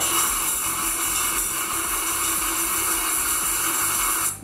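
Electric mixer grinder running steadily at full speed with an even whirring, grinding dry coconut and green cardamom to a fine powder.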